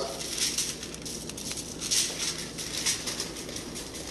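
Seasoning shaker bottle shaken in short, irregular bursts, dry rub granules pattering onto raw brisket and aluminium foil, with a light rustle of the foil under the hands.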